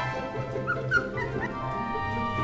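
Background music, with an Akita puppy giving a few short, high whimpering squeaks about a second in. The puppy is five weeks old and tense on the soft bed.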